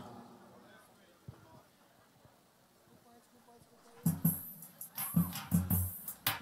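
Near silence for about four seconds, then a band starts playing with short, punchy low notes.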